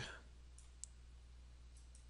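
A few faint computer mouse clicks over near silence and a low steady hum, the clearest click a little under a second in.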